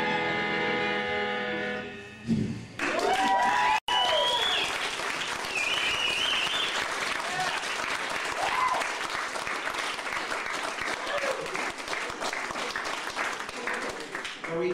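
A held chord from electric guitar and band rings out at the end of a song, then about three seconds in the audience breaks into applause with a few whoops and shouts.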